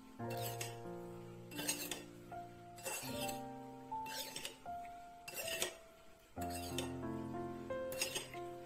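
Metal spoon stirring sugar into soy sauce in a small ceramic bowl, clinking against the bowl's sides about six times, over soft background music with held notes.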